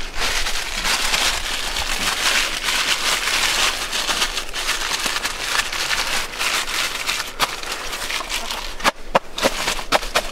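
Plastic toilet liner bag crinkling and rustling steadily as it is tucked in around the rim of a portable toilet's bucket, with a few sharp clicks near the end.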